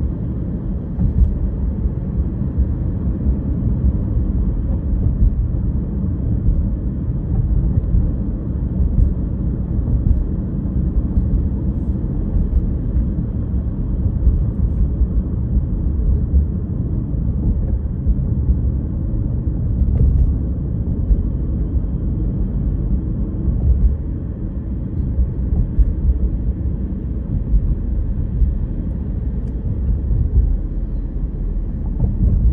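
Steady low rumble of a car driving at road speed, heard from inside the cabin: tyre and road noise with the engine underneath.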